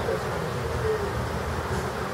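Hand-turned banding wheel spinning on its base with a low, steady rumble.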